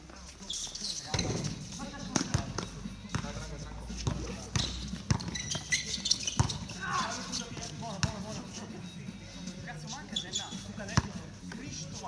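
A basketball bouncing on an outdoor hard court during play: a run of separate sharp thuds at irregular spacing, one of the sharpest near the end.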